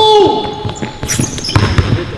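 Basketball being dribbled on an indoor court floor, a quick run of thumps in the second half, after a drawn-out held call from a player's voice in the first second.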